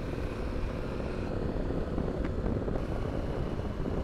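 Harley-Davidson Pan America motorcycle riding at highway speed, about 60 mph: a steady drone of its Revolution Max V-twin engine mixed with wind rumble on the microphone.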